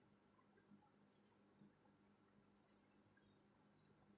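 Near silence: room tone with a faint low hum and two faint, sharp double clicks about a second and a half apart.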